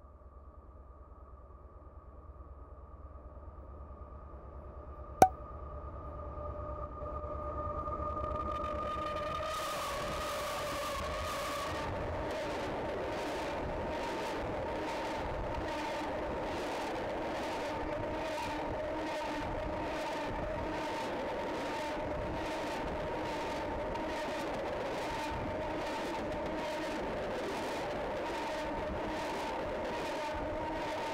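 Freight train of tank cars approaching and rolling over a camera set on the rails. A hum and steady ringing tones build over the first several seconds, with one sharp crack about five seconds in. From about ten seconds the ringing pitch dips slightly and the wheels pass close by, clicking in an even rhythm over a continuous rumble.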